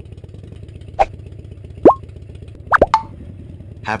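Cartoon plop sound effects: short upward-sliding blips about one second in, near two seconds, and twice in quick succession near three seconds, the one near two seconds the loudest, over a steady low rumble.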